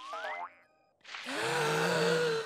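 A cartoon sound effect: a quick rising whistle-like glide that cuts off after half a second. After a short silence, a child's voice begins a long, steady meditative "om" hum.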